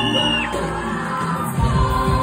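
Live band playing with singing, amplified on a club stage; a high held note stepping upward ends about half a second in. Shouts and whoops come from the crowd, and the bass end drops out briefly before the band comes back in near the end.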